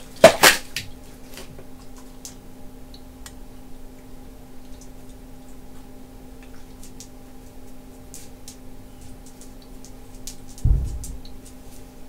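Two sharp clicks in quick succession from the front-panel switches of an HP 4261A LCR meter as its settings are changed, followed by faint scattered ticks over a steady electrical hum. A dull thump comes near the end.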